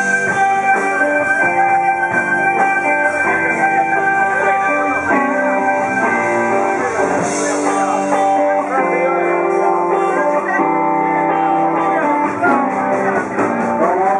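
Live blues band playing an instrumental passage without vocals: electric guitar over drums, bass guitar and keyboards.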